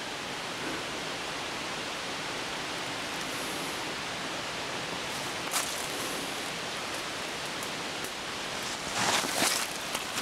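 Steady, even hiss-like outdoor noise, with a single short click about halfway through and a brief burst of rustling near the end.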